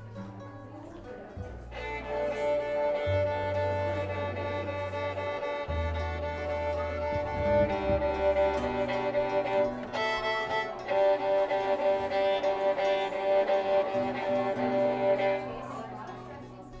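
Fiddle playing a slow run of long held notes over plucked upright bass, coming in about two seconds in and dropping away near the end, a slow country-song intro.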